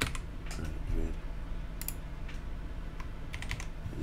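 Computer keyboard being typed on: a few scattered keystrokes.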